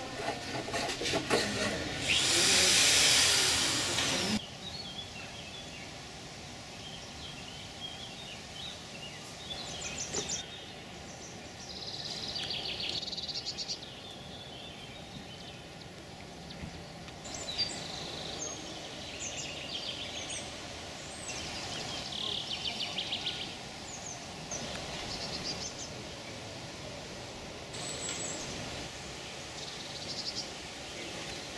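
Outdoor garden ambience with birds giving short high chirps and trills on and off. About two seconds in, a loud burst of noise lasts roughly two seconds and stops abruptly.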